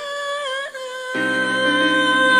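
A woman singing a long held note. Instrumental accompaniment comes in under it about a second in, and the sound grows louder.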